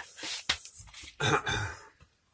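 A man clears his throat once, loudly, about a second and a half in. Before it comes a short rasping scuff of an abrasive sanding sponge rubbed on the guitar body's glossy paint, scuffing it so body filler will stick.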